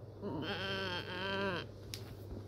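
A girl's wordless, strained whining vocalisation, about a second long with a slightly wavering pitch that sags at the end: an effort noise while pulling photos off a wall.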